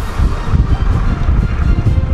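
Wind buffeting the microphone: a heavy, gusting low rumble.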